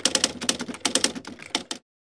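Typewriter typing sound effect: a rapid run of sharp key clicks, about ten a second, stopping abruptly near the end.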